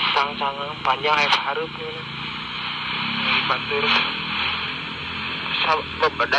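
A voice coming through a Baofeng handheld two-way radio's speaker, thin and narrow-sounding. It talks for about the first second and a half and again near the end, with steady static hiss in between while the channel stays open.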